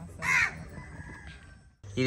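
A crow cawing once, a short harsh call about a quarter of a second in.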